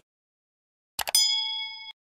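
A mouse click, then a bright bell ding that rings for under a second and cuts off suddenly: the notification-bell sound effect of a subscribe-button animation.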